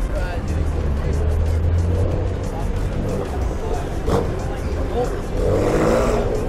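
Street traffic: cars driving through a busy intersection, with a low engine rumble from a car passing during the first couple of seconds, over the chatter of people nearby.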